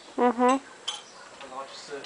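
A person's voice making a short two-note sound, followed by a single sharp click.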